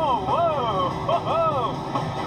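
Background music made of smooth, arching rising-and-falling tones, over a steady low rumble of vehicle road and engine noise.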